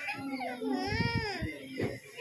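A young child crying: one long wail that rises in pitch, peaks about a second in, then falls away.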